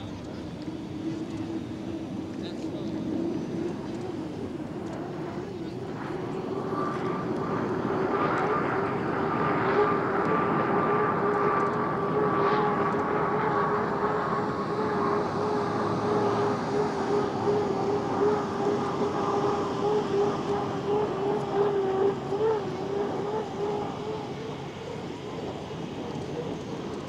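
An unlimited hydroplane's turbine engine running at racing speed, a steady high whine that grows louder from about eight seconds in as the boat passes and eases off near the end.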